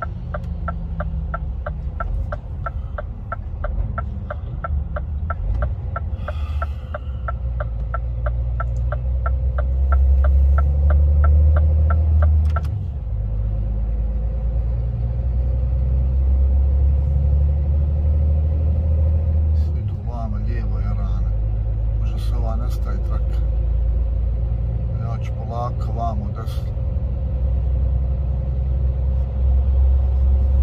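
Truck cab interior at motorway speed: steady low rumble of the engine and road, shifting in note about two-thirds of the way through. A regular ticking, about four a second, runs through the first dozen seconds and then stops.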